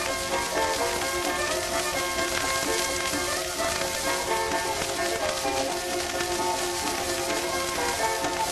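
Old-time string band of fiddle, mandolin, banjo, guitar and ukulele playing an instrumental break with no singing. Under it runs the steady hiss and crackle of a 1924 acoustic-era 78 rpm shellac disc.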